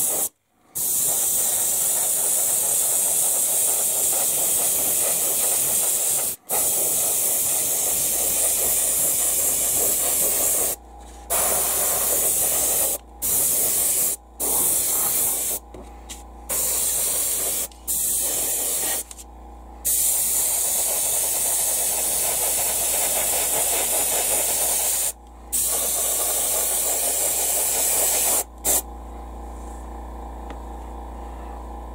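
Airbrush spraying acrylic paint in a steady hiss, repeatedly broken by short pauses as the trigger is let off, and stopping about a second before the end.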